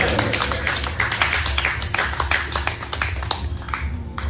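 Scattered hand clapping from an audience, with many irregular claps that thin out near the end, over a steady low drone from the music.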